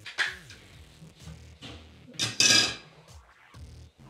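Plastic water-bottle parts being handled at a bathroom sink: a sharp knock just after the start, then a louder, brief rattling clatter about halfway through, over quiet background music.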